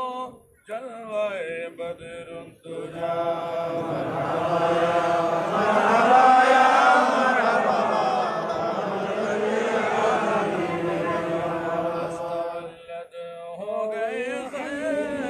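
A gathering of men chanting an Islamic devotional salutation of a milad-qiyam in unison, answering a solo leader. A lone voice sings the first couple of seconds, the crowd joins about three seconds in, and it thins back to the single voice near the end.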